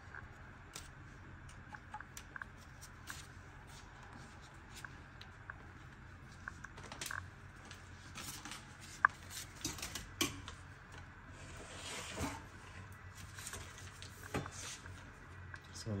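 Dry lasagne sheets being handled and laid into a glass baking dish: scattered light clicks and taps of the stiff pasta against itself and the glass, the sharpest click about nine seconds in.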